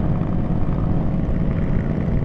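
Motorcycle engine running at a steady cruising speed under wind noise, the engine note holding level with no gear change.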